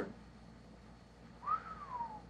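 A single short whistle-like note about one and a half seconds in, rising quickly and then sliding down over about half a second.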